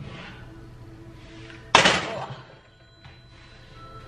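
A heavy enamelled Dutch oven set down hard on the stovetop: one loud clunk with a short ringing decay just under two seconds in, over faint background music.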